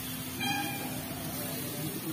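A cat meowing once, briefly, about half a second in, over a steady hiss from the hot dosa griddle.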